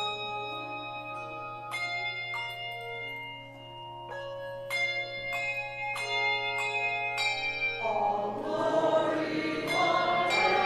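Piano playing a hymn, its notes struck one after another and left to ring. About eight seconds in, the choir and congregation start singing the hymn over it.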